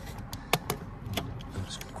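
A few sharp clicks and knocks from a jump-starter pack's red jump-lead clamp being handled, the loudest about half a second in.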